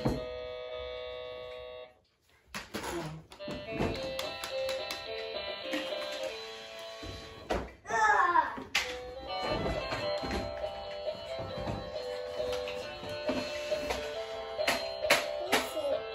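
Electronic toy guitar playing a recorded tune. The tune cuts off about two seconds in and starts again half a second later, with clicks through it.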